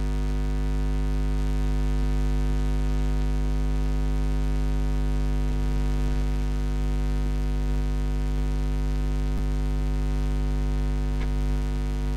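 Loud, steady electrical mains hum with a dense stack of even overtones, unchanging throughout. Two faint clicks sit on top, about nine and eleven seconds in.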